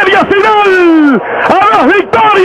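Radio play-by-play announcer shouting a home run call in Spanish that wins the game. About midway he holds one long vowel that falls in pitch, then goes on shouting.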